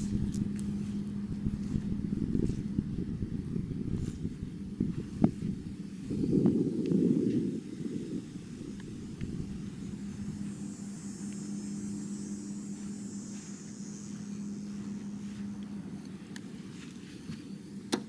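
Wind buffeting the microphone in rough low rumbles, over a steady low hum; a stronger gust about six seconds in.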